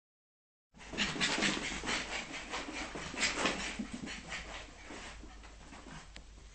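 Small dog panting rapidly, starting about a second in and easing off near the end.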